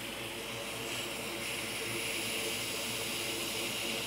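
Steady hiss of blowing air from a hot air rework station, growing slightly louder about a second in.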